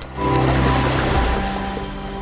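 Ocean surf breaking and washing up a beach: the rush swells just after the start and then slowly fades. Sustained music chords run beneath it.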